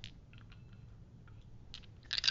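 A few faint, scattered clicks and light taps of a small die being handled and rolled on a tabletop.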